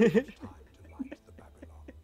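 Men laughing: a loud burst of laughter at the start, trailing off into short, breathy chuckles.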